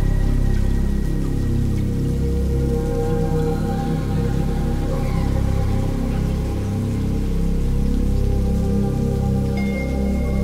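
Ambient eurorack modular synthesizer music: sustained wavetable pad tones over a low, slowly pulsing bass, with a siren-like tone gliding slowly upward throughout.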